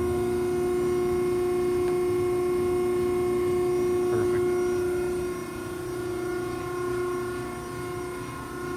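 Betenbender hydraulic squaring shear running with a steady, even hum while its back gauge is driven back toward zero. The hum drops a little in level about five seconds in.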